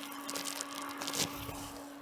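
Faint rustling and small clicks of a hand unplugging a temperature sensor's lead from an Arduino controller board, over a steady low hum.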